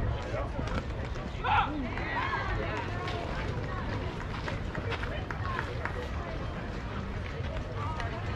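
Indistinct voices of softball players and spectators calling out, with one louder call about a second and a half in, over a steady low rumble.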